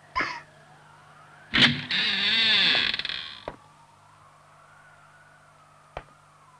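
A young girl crying out in a loud wail that starts about one and a half seconds in and lasts about two seconds, its pitch wavering, after a short sob at the start.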